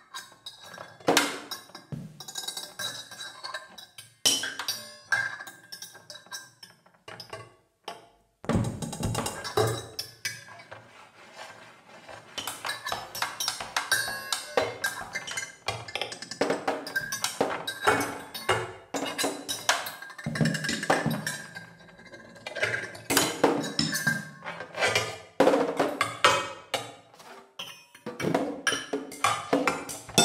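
Free improvisation for amplified cymbals handled and struck by hand and a snare drum played with drumsticks, with small cymbals laid on its head: a dense, irregular clatter of taps and hits with ringing metal tones. A deeper, heavier passage starts about eight seconds in.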